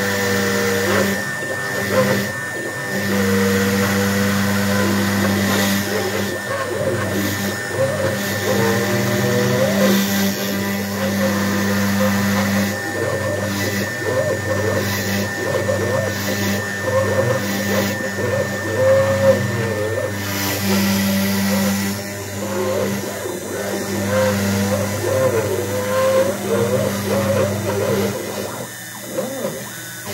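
Sphinx CNC router carving MDF: the spindle holds a steady high whine while the stepper motors whine in rising and falling pitches as the axes change speed, over a low hum that cuts in and out.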